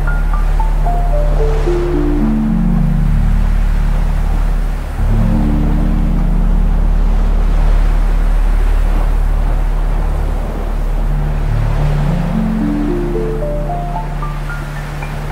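Slow ambient music: a low sustained drone, with a run of notes stepping down in pitch at the start and stepping back up near the end, over a wash of ocean surf.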